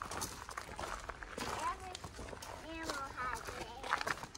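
Footsteps crunching on a gravel trail, with a child's voice calling out faintly a few times.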